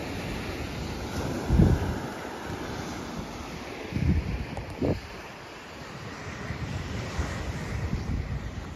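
Surf breaking and washing on a sandy beach, a steady rushing, with wind buffeting the microphone in gusts, the strongest about one and a half seconds in and again around four and five seconds.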